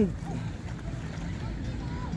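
Steady low rumble of wind on the microphone, with faint voices of other people around the pool.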